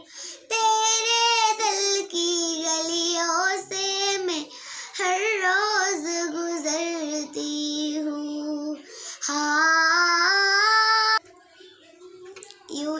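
A girl singing unaccompanied, in long phrases with wavering held notes, breaking off about eleven seconds in.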